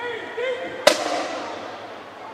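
A single sharp bang just under a second in, the loudest thing here, ringing out briefly in a large hall's reverberation; a person's voice is heard just before it.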